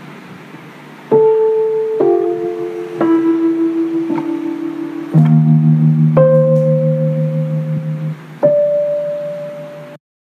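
Slow instrumental music: after a quiet first second, sustained keyboard notes are struck about once a second and left to ring, with a louder low chord about halfway through.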